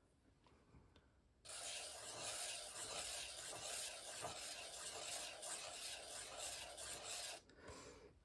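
Metal dip-pen nib scratching across 300 gsm watercolor paper as circles are drawn in ink, a steady scratchy rasp that starts about a second and a half in and stops just before the end.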